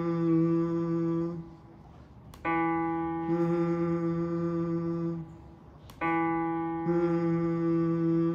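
A man humming the note E3 (about 165 Hz) with closed lips, holding the same steady pitch three times with short breaks between. It is a reference note for matching pitch in voice training.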